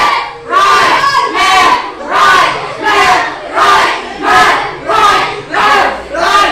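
A group of players shouting a cadence in unison, about one shout every 0.7 seconds, to keep in step on long shared wooden sandals.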